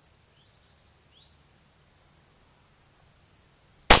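A single shot from a .22 semi-automatic pistol, sharp and loud, near the end. Before it there are only faint short chirps over a thin, steady high-pitched hum.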